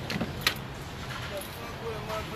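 A single sharp knock about half a second in, over a steady low rumble inside a car cabin.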